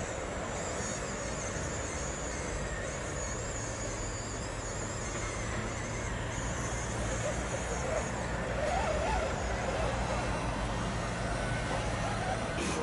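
Electric motor and gearbox of a scale RC crawler truck whining as it creeps up a steep dirt bank, the high wavering whine coming and going with the throttle, over steady background noise and a low hum.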